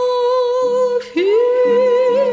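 A woman singing a Turkish classical art song, holding one long steady note, breaking briefly about a second in, then sliding up into the next long note with vibrato. A lower sustained tone comes and goes beneath the voice.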